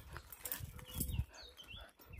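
A dog on a metal chain moving about on concrete, quietly: soft footfalls and light clinks of the chain, with a few faint high chirps near the end.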